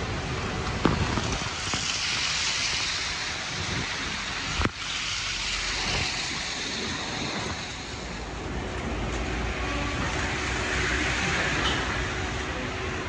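City street noise on a snowy road: a steady rush of passing traffic with wind buffeting the microphone. Two sharp knocks break through, about a second in and just under five seconds in.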